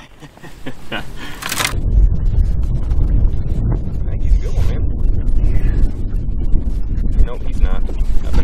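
Low, gusting rumble of wind buffeting the microphone, starting about two seconds in, with faint voices now and then.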